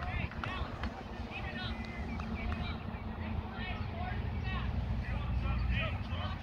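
Distant, scattered voices of players and spectators at a ball field, none close enough to make out, over a steady low wind rumble on the microphone.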